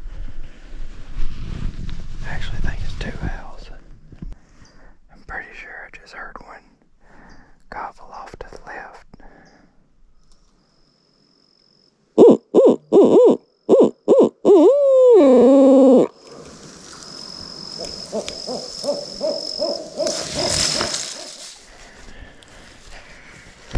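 Barred owl hooting loudly about halfway through: a quick run of short hoots that ends in a long, falling drawl. Before it there is rustling; after it a fainter steady background with a thin high tone.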